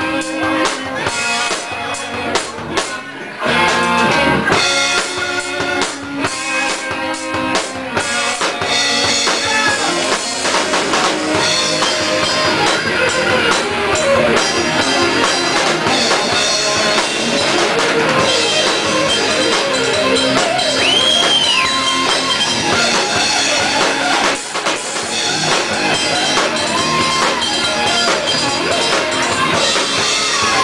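Live band playing an instrumental passage: electric guitars over a drum kit.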